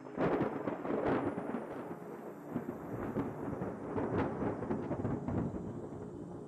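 A noisy transition sound effect: a sudden, dense rumble that sets in at once and trails off slowly over several seconds.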